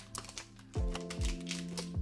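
Foil wrapper of a block of air-drying modelling clay crinkling and tearing as it is pulled open, in a rapid run of small sharp crackles, over steady background music.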